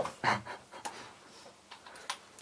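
A person's short breathy puffs, the loudest about a quarter second in, with a couple of light clicks from handling the LiPo battery and the airsoft replica.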